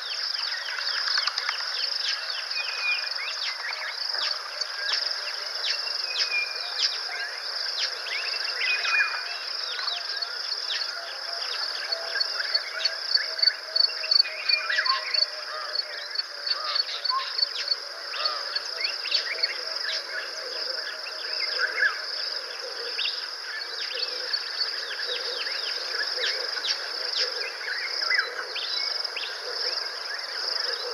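Bush soundscape: a steady high insect drone under many short, falling bird calls, with a rapid run of high ticks about a third of the way in.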